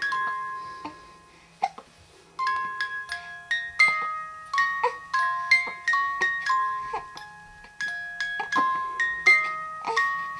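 Musical crib mobile playing a chiming lullaby tune, one ringing note after another. The tune breaks off about a second in and starts again about two and a half seconds in.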